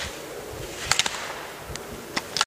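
Slalom ski racer knocking the hinged slalom gate poles aside: a quick cluster of sharp clacks about a second in and a fainter one near the end, over the hiss of skis on snow.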